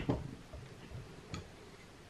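A few faint clicks and taps of small objects being handled, the sharpest about 1.3 seconds in.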